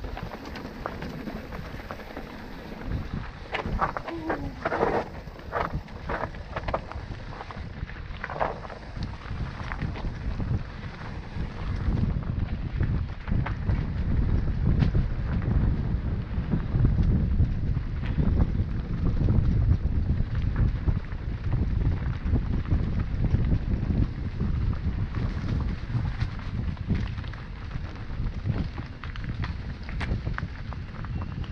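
Wind buffeting an action camera's microphone on a mountain bike descending a rough dirt singletrack, with tyre rumble and the bike rattling and knocking over bumps. It gets louder from about halfway through as the bike speeds up.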